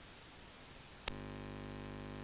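A faint hiss, then a single sharp click about a second in, after which a steady electrical hum with several tones sets in.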